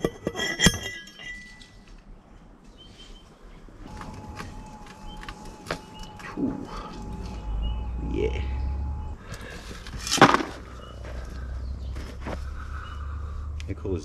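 Hand dolly pot crushing gold-bearing ore: the steel pestle strikes once with a sharp metallic clink under a second in, followed by scattered small clinks of rock pieces, and a second sharp knock about ten seconds in.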